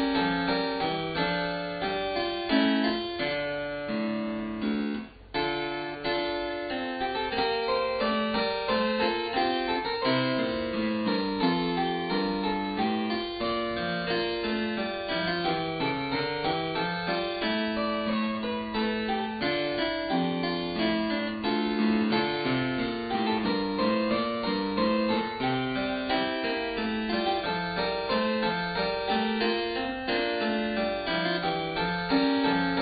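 Harpsichord playing a Baroque keyboard piece in steady, interweaving lines, with a brief break about five seconds in.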